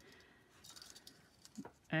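Faint, light clicks and rustles of fine silver wire and small beads being handled between the fingers.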